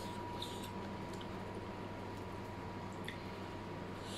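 Soft wet chewing and small mouth clicks of someone eating fried instant noodles with shrimp, with a few faint sharp clicks, over a steady low hum and a faint steady whine.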